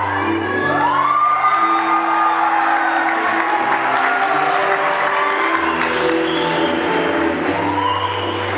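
Acoustic guitar playing a slow song introduction, with held low bass notes under plucked melody notes. The audience cheers over it through the first half, with one voice rising and holding about a second in.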